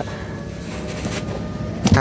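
Steady rushing hiss inside a car cabin, with light handling sounds as a hand moves over the fabric seatback.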